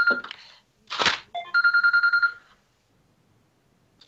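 A telephone ringing with an electronic trill: two rings of about a second each. Between them comes a short, loud hiss-like burst.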